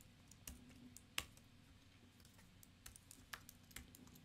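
Faint, scattered keystrokes on a computer keyboard, a few irregular clicks with the sharpest about a second in.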